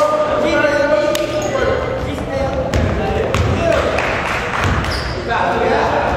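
Basketball bouncing on a hardwood gym floor in play, a few dull thuds in the second half, with players' shouts in the gym.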